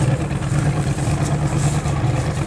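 BPM 8000cc V8 engine of a Celli three-point racing hydroplane running steadily at speed on the water, a continuous low, even drone.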